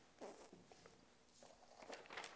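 Near silence: room tone with two faint, short rustles, one about a quarter second in and one near the end.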